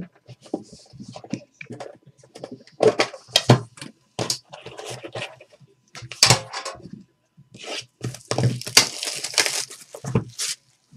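Hands opening a cardboard trading card box and handling its packaging: a run of knocks and taps against the box and table, with scraping between them. Near the end comes a longer rustling tear, as of a wrapper or seal being opened.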